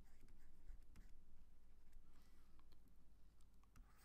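Near silence with faint scratches and light taps of a stylus writing by hand on a tablet screen.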